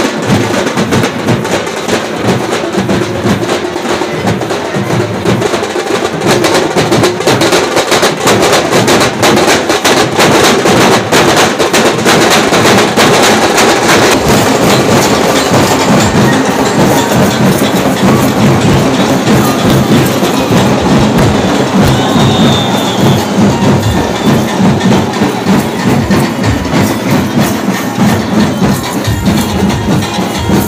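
Loud, rhythmic percussion of a lezim dance: drumming with the quick metallic clash and jingle of many lezim played in time.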